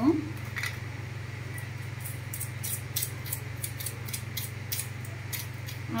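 A small spice shaker being shaken over a bowl of poha mix: a run of quick, dry high ticks, about four a second, for several seconds, over a steady low hum.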